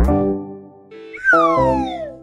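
Children's background music with cartoon sound effects: a sharp thump right at the start, then, a little past halfway, a long pitched tone that slides steadily down for almost a second.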